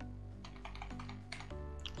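A few scattered computer keyboard key clicks over soft background music with steady sustained notes.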